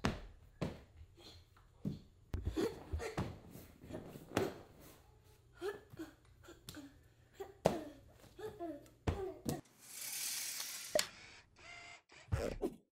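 Thuds of a barefoot child hopping on one leg along a low balance beam and rubber gym floor, with short vocal sounds and laughter between the landings. Near the end comes a brief whoosh effect as the logo animation starts.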